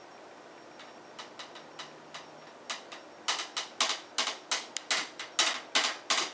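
A wooden stick tapping on tin cans: a few faint ticks at first, then from about halfway sharper, uneven taps about three a second.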